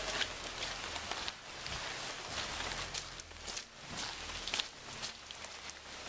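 Footsteps squelching on wet, muddy ground, with a steady outdoor hiss beneath and a few faint knocks.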